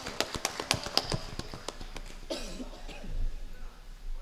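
A few people clapping by hand, scattered claps that thin out over the first two seconds. A brief vocal sound follows near the three-second mark.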